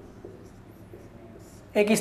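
Marker pen writing on a whiteboard: faint scratching strokes with light squeaks as a word is written, followed near the end by a man starting to speak.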